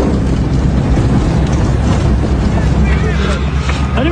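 Car being driven, heard from inside the cabin: heavy engine and road rumble with jolts, and wind buffeting the microphone. Faint voices come in near the end.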